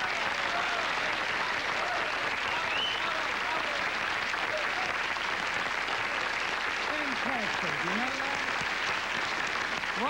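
Studio audience applauding, a dense, even clapping, with a voice faintly heard over it about seven seconds in.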